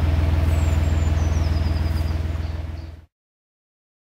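A narrowboat's diesel engine running steadily at low revs in forward gear, a low, evenly pulsing drone. It fades out about three seconds in, leaving silence.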